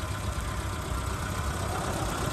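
1995 Suzuki Jimny Sierra's 1.3-litre eight-valve four-cylinder engine idling steadily.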